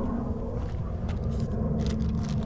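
A steady low hum over a rumble, with a few light rustles of plastic zipper bags near the end.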